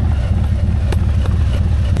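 Harley-Davidson Low Rider ST's Milwaukee-Eight 117 V-twin engine running steadily with a low pulsing rumble, with a single sharp click about a second in.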